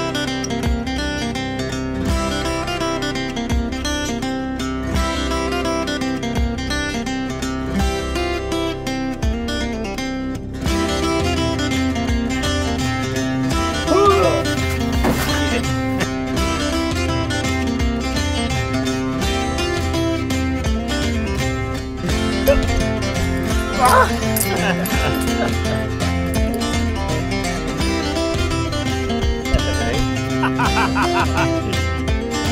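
Background music led by acoustic guitar, playing steadily.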